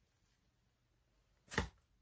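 One short, sharp thump about one and a half seconds in, amid near quiet, from handling a heavy sequined shirt as it is lifted and held open.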